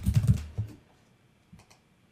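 Typing on a computer keyboard: a quick run of key clicks in the first half second or so, then quiet with a few faint clicks about a second and a half in.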